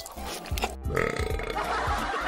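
A cartoon burp sound effect, starting about a second in, over background music with a steady beat.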